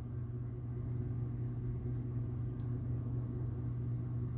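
A steady low electrical or mechanical hum with no speech, unchanging throughout.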